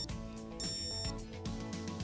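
Garmin Delta XC dog collar giving a brief blip and then one long, high electronic beep of about half a second: the signal that pairing with the handheld has failed. Background music plays under it.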